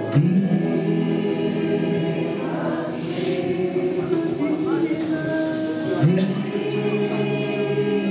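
Live worship music: women's voices singing slow, held lines over electric guitar, with new sung notes starting just after the start and again about six seconds in. A soft hissing swish comes about three seconds in.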